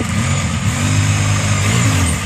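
ATV engine running under load at a steady pitch as the four-wheeler's front tires push against a steep creek bank, trying to climb out. The pitch sags briefly near the end.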